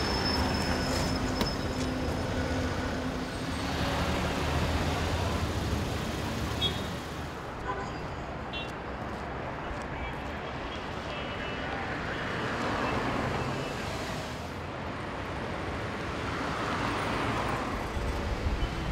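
Busy city street traffic: cars running and passing by in waves, with indistinct voices in the background.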